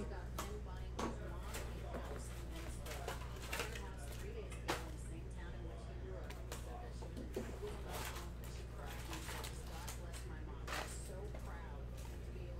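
Trading card boxes being opened and foil card packs handled: scattered light crinkles, rustles and taps as the packs are taken out and laid down, over a steady low hum.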